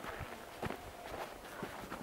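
Footsteps on snow, about two steps a second.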